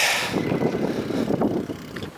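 Rumble of a bicycle rolling over a concrete square, picked up close by a camera riding on the bike, with a brief hiss at the start.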